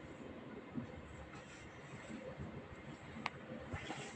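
Rolling noise of a Cityshuttle passenger coach heard from inside as the train runs along the line, a steady low rumble of wheels on rail, with one sharp click about three seconds in.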